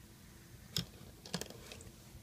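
A few small clicks and taps from a hook and rubber bands against the plastic pegs of a Rainbow Loom, the first a little before the middle and the rest in the second half.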